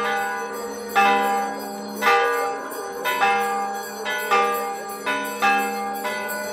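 Church bells ringing, one stroke about every second, each stroke ringing on and fading into the next.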